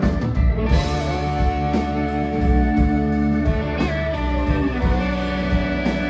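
Live rock band playing an instrumental passage: electric guitars and bass with a Nord Electro keyboard, a long guitar note bending in pitch over the chords, and regular cymbal ticks keeping the beat.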